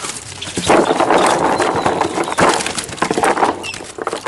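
Live tilapias thrashing in a cast net as they are dumped into a metal tub: a dense, rapid run of wet slaps and knocks. It starts about half a second in and eases off near the end.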